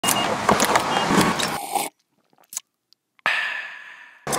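Gas pump card reader: clicks and two short beeps as a card is inserted at the pump. After a break of about a second of silence, the pump starts dispensing fuel with a steady whine that trails off.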